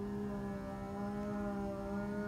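Dhrupad vocal music: a male singer holding one long, steady note.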